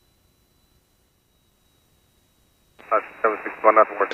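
Dead silence on the intercom audio for nearly three seconds, then a voice comes in over the aircraft radio near the end, thin and narrow-sounding.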